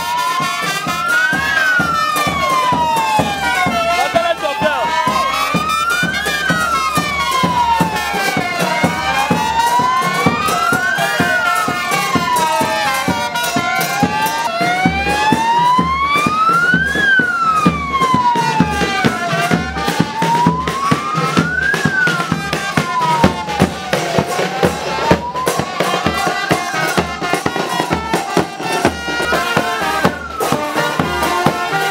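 A wailing siren, its pitch sweeping steadily up and down about once every five seconds, six times over, with music and crowd noise beneath.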